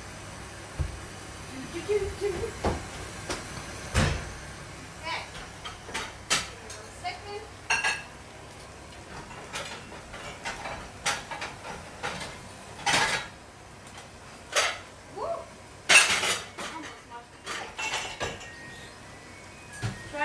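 Pans and cooking utensils clinking and knocking on a stove top in short, scattered clatters. A steady low hum stops about four seconds in.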